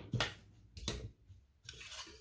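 Faint handling noise: a few light, irregular knocks and a short rustle as a hand moves over a paper sheet on a tabletop and picks up a wristwatch.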